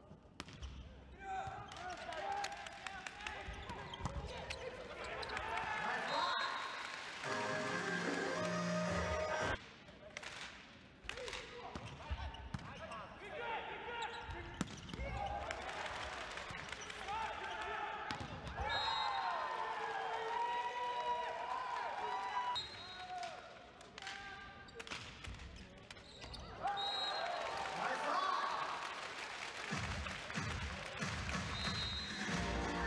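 Indoor volleyball match sound: the ball being struck and hitting the hardwood court in rallies, with short high whistle blasts, under arena music and voices, broken by edits between rallies.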